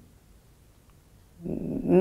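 About a second and a half of near silence as the speaker pauses, then her voice starts again near the end with a drawn-out hum leading into her next words.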